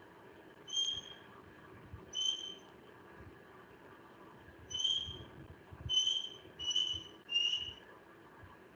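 Six short, high whistle-like notes at irregular intervals, each steady in pitch and under half a second, the last dipping slightly, over a faint steady hiss.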